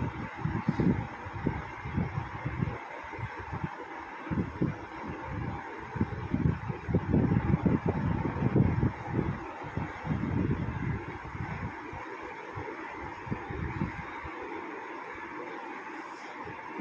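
Wind noise on the microphone: uneven low rumbling gusts of moving air over a steady hiss.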